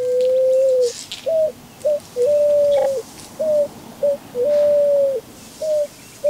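Hand whistle blown through cupped hands, imitating a pigeon's coo: one pure hooting note, held long and then broken into short hoots, in a repeating pattern.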